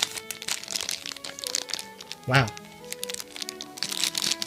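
Thin clear plastic bag crinkling in the hands as a small vinyl figure is handled inside it, in many quick crackles. Background music with held notes plays throughout.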